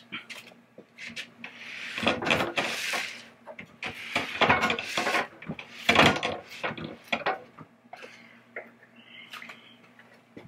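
Wooden pinball cabinet and its bolted-on metal legs being handled: irregular clanks and knocks, with a scraping rush about two seconds in and a cluster of louder knocks near the middle.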